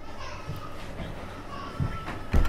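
Faint background voices murmuring in a room, with a soft low knock near the end.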